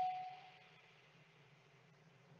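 A single electronic chime note ringing out and fading over about half a second, ending a short run of stepped notes; then near silence with a faint low hum.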